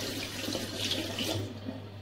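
Bathroom ventilation fan humming steadily, under a rushing hiss that dies away about a second and a half in.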